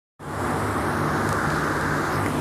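Steady background noise with a low hum under a hiss, starting abruptly just after the start.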